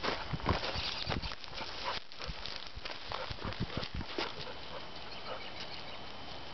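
Two Newfoundland dogs running over dry, matted grass: irregular paw thuds and crackling of the dry grass for about four seconds, then a quieter, softer rustle as they slow down and meet.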